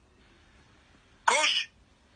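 A person coughing once, briefly, a little over a second in; faint hiss around it.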